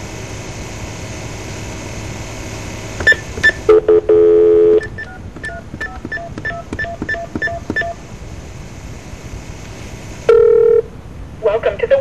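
Touch-tone (DTMF) dialling heard over a telephone line. Line hiss comes first, then three short key beeps about three seconds in and a steady tone lasting about a second. A quick run of about a dozen key beeps follows, and another short tone sounds near the end.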